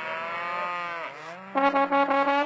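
A cow moos once, a long call that rises and then falls in pitch. About a second and a half in, a trombone comes back in with a quick run of short notes into a held note.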